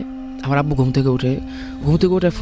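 A man speaking Bengali briefly in the middle, over a steady held tone of background music that stops near the end.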